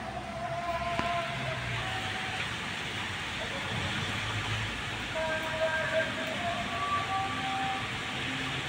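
Heavy rain pouring steadily on paving and foliage, with a few faint short steady tones sounding over it in the second half.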